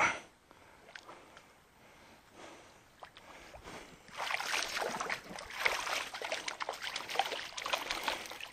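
Shallow stream water splashing and sloshing close to the microphone, starting about four seconds in after a quiet start, with many small clicks and drips.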